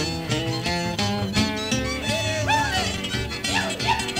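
Old-time country string band playing an instrumental with guitar to the fore, with sliding notes coming in about halfway through.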